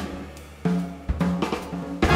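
Jazz drum kit in a sparse, quiet passage: a few separate hits with cymbals, snare and bass drum over held double-bass notes.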